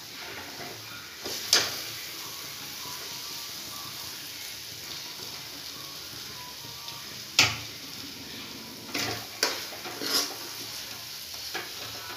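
Steel ladle scraping and knocking against a metal kadai while stirring sooji halwa, over a steady low sizzle from the pan. There is a sharp knock about a second and a half in, and several more in the second half.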